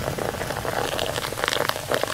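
Sparkling wine being poured into a glass, fizzing and crackling with many tiny bubble pops.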